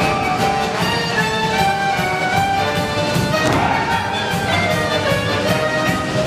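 Orchestra with brass and violin playing a lively dance tune with a steady beat.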